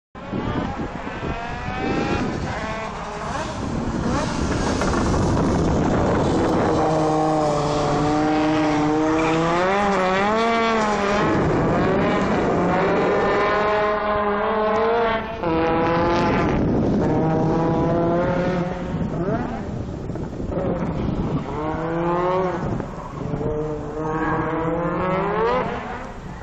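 Audi Sport Quattro E2 rally car's turbocharged five-cylinder engine driven hard, its note climbing in pitch under acceleration and dropping sharply at each gear change, over and over. It is loudest in the middle, with a brief cut in sound about fifteen seconds in.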